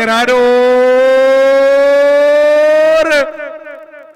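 A man's long, loud, drawn-out shout held on one note over a public-address system, rising slightly in pitch for about three seconds. It cuts off with a short echo.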